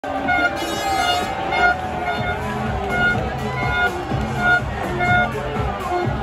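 Loud music with short repeated notes about twice a second, over the voices and noise of a large street crowd.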